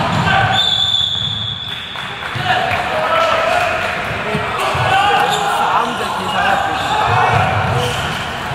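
Indoor handball game: a referee's whistle blows once for just over a second near the start, then the ball bounces on the court floor again and again amid players' calls, with the echo of a large hall.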